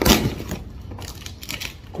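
Cardboard box and brown kraft packing paper being torn open by hand: a loud rip right at the start, then quieter crackling and rustling.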